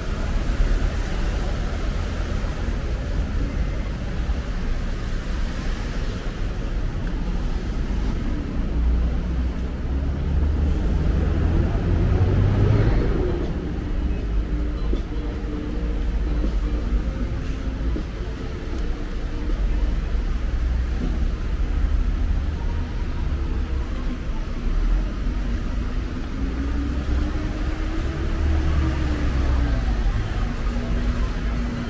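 City street ambience: a steady low rumble of road traffic, with a vehicle passing more loudly near the middle and another engine rising and falling in pitch near the end.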